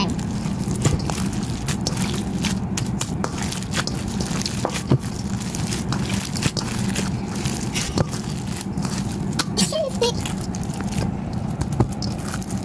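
Sticky foam-bead slime (floam) being kneaded and squeezed by hand in a stainless steel bowl: a continual run of small crackling clicks and squishes over a steady low hum.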